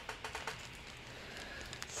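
Faint handling noises at a craft table: a few light clicks in the first half second, then soft rustling as a clear plastic zip bag is moved.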